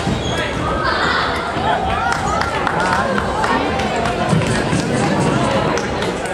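Indistinct chatter of many voices, children's among them, echoing in a large sports hall, with scattered short knocks.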